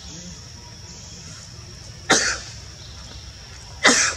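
Two short, sharp cough-like bursts, about two seconds in and again just before the end, well above a steady high hiss.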